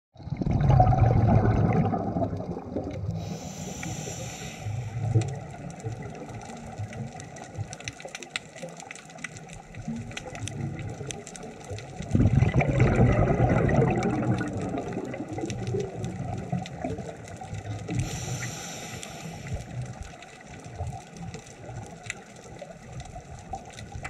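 Scuba diver breathing through a regulator underwater: exhaled bubbles rumble out about a second in and again about twelve seconds in, with a short hiss of inhalation at about four and eighteen seconds. A steady crackle of faint clicks runs underneath.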